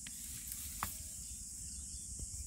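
Steady high-pitched chorus of insects, with a faint click a little under a second in.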